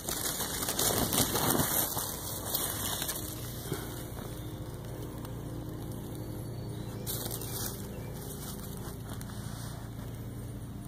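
Dry leaf litter and undergrowth rustling and crackling as someone moves through woods, loudest in the first three seconds. After that, a faint steady low hum.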